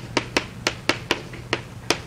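Chalk clicking and tapping against a chalkboard as equations are written by hand, a string of sharp clicks a few tenths of a second apart.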